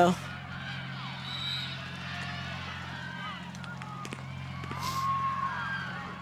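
Distant voices of players and spectators calling out across a field hockey pitch, faint and scattered, over a steady low hum. A few faint clicks sound about midway.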